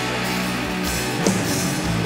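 Doom metal band playing live: bass, electric guitar and drums holding heavy, sustained low chords, with a sharp drum hit about a second and a quarter in.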